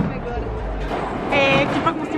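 Bowling ball rolling down a wooden lane after release, a steady low rumble, with a short voice calling out about one and a half seconds in.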